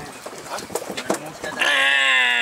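A man's voice making a long, wavering, drawn-out call that starts about one and a half seconds in and sinks slightly in pitch; before it, soft clicks and murmurs.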